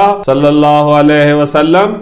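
A man's voice reciting Arabic text in a drawn-out, chant-like cadence, holding long steady notes with a short break about halfway through.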